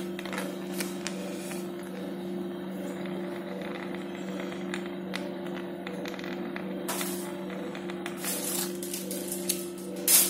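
A steady low machine hum in the operating theatre, with scattered light clicks and clinks from surgical instruments being handled, a few together near the end.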